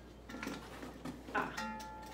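Hands rummaging in a cardboard shipping box: rustling and a couple of light knocks from the box and the packaged kitchen items, followed near the end by a drawn-out 'ah'.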